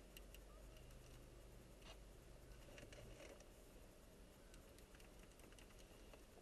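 Near silence inside a slowly moving car: a faint steady low rumble of the engine and road, with a few faint ticks.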